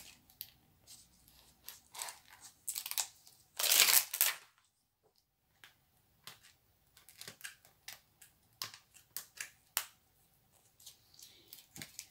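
Clear plastic stamp sheet crinkling and rustling as it is handled and peeled, in short scattered crackles and clicks. There is one louder rustle about four seconds in.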